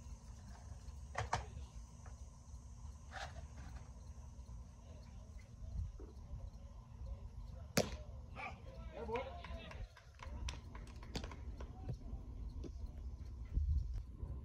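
Outdoor baseball-field sound: wind rumbling on the microphone and distant voices, with one sharp pop about eight seconds in as a pitch reaches home plate.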